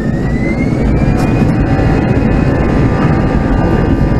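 Airbus A320's jet engines spooling up for takeoff, heard from inside the cabin: a whine that rises in pitch over the first second and a half above a loud, growing low rumble, which then holds steady.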